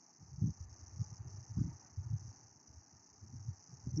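Quiet background with no speech: a steady high-pitched hiss and several soft, irregular low thumps.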